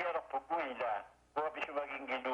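A voice speaking over a telephone line, thin and cut off in the highs, in quick phrases with a short pause about halfway through.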